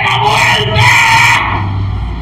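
A man shouting loudly and fervently in prayer, his words not clear, for about a second and a half before it drops off.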